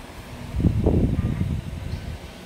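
Low rumbling handling noise on the phone's microphone as the phone filming is moved. It comes in a burst starting about half a second in and lasting a little over a second.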